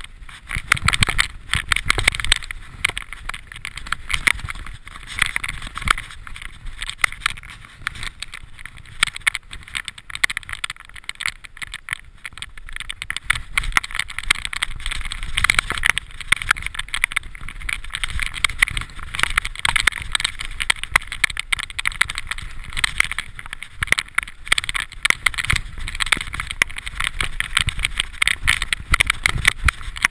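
Mountain bike descending a rough, leaf-covered dirt trail: a continuous, irregular rattling and clattering of the bike over bumps and roots, with tyre noise on the dirt and leaves, heard through a camera mounted on the rider's body.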